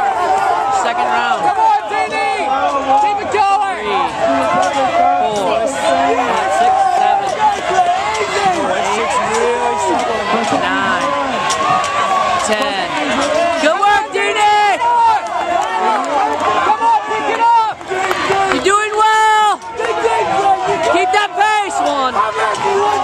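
Spectators shouting and cheering, many voices overlapping, with a louder shout standing out near the end.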